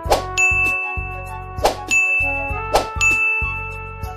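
Three bright ding sound effects, each ringing on for about a second, over background music.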